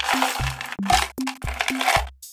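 Dry crackling and rustling of snack packaging and crunchy chocolate cereal squares being handled and tipped into a hand, in several short bursts. Underneath plays background electronic music with a steady beat.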